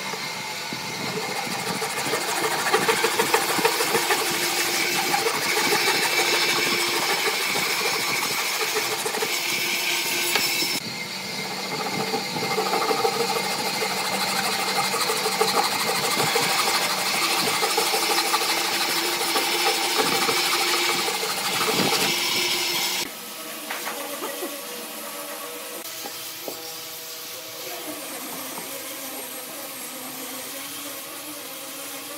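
Hand saw cutting through a stack of clamped wooden boards, a steady run of rasping strokes. About 23 seconds in the sawing stops and the sound drops to a quieter level.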